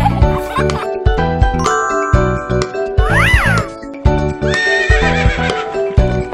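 Children's cartoon music with a steady beat. About three seconds in, a brief horse whinny sound effect rises and falls in pitch over the music.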